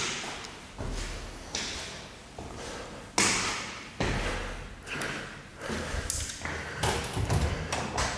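Footsteps climbing concrete stairs, a step about every 0.8 seconds, each a dull thud with a short echo in the stairwell.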